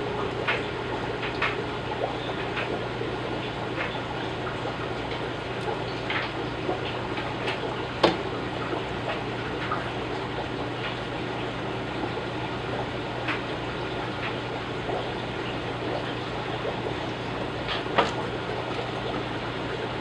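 Aquarium gravel vacuum siphoning water from a tank into a bucket: a steady run of water with many small scattered clicks, a sharper click about 8 s in and another near the end.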